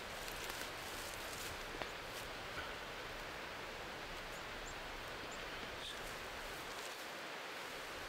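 Soft rustling and a couple of small crackles as moss and forest litter are handled and pressed down by hand, over a steady outdoor hiss.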